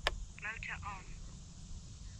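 A sharp click, then a brief thin, narrow-band voice as if from a small loudspeaker, over low wind rumble on the microphone.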